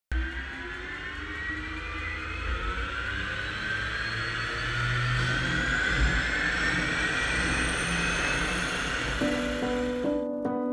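Garrett TPE331 turboprop of a DHC-3 Otter floatplane spooling up on start: a turbine whine rising slowly in pitch over a low rumble, growing louder. Piano music comes in near the end.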